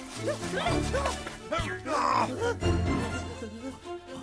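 Cartoon background music, with dog-like yelps and growls voiced for a wolf over it.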